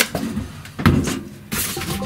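Plastic packaging crinkling and rustling as it is pulled off a boxed machine, loudest in bursts at the start and again about a second in.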